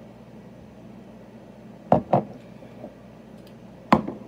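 A water bottle being handled while drinking from it, making two quick knocks about halfway through and a sharper knock just before the end as it is lowered.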